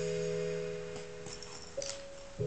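Soft background music: a sustained keyboard-like chord held through, shifting slightly near the end, with a few faint clicks.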